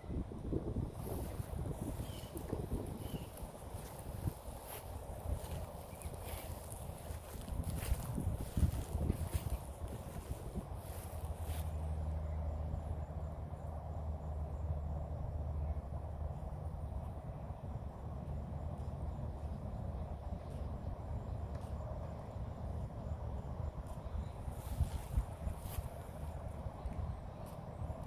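Wind on the microphone outdoors, a steady rustling rush, with scattered soft knocks in the first half. A low steady hum sets in about twelve seconds in and fades a few seconds later.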